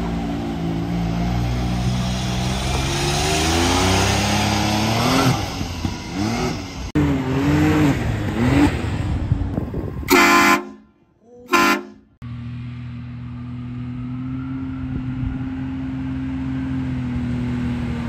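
Can-Am Maverick X3 Turbo RR side-by-side's turbocharged three-cylinder engine running and revving, its pitch rising and falling. About ten seconds in, two loud blasts of a train horn fitted to a pickup truck, the first longer. After that a steady engine drone.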